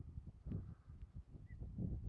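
Faint low rumble of wind on the microphone outdoors, with a brief faint high chirp about one and a half seconds in.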